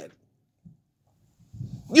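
A man's voice drawing out a mocking, sing-song "You said" with big swoops in pitch, starting near the end after a near-silent pause.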